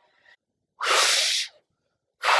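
A woman blowing out one long, forceful breath into a twig held at her mouth, about a second in.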